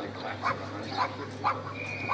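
A dog barking repeatedly in short, sharp barks, about two a second. A steady high-pitched tone starts near the end.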